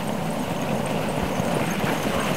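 Dog sled team approaching over packed snow: a steady rushing of sled runners and paws on the snow, slowly growing louder.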